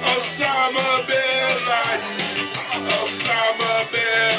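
Live electronic keyboard music: a preset rock-and-roll accompaniment with a melody line over a steady beat.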